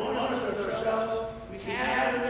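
A man's voice preaching a sermon, with one word drawn out into a held tone about halfway through.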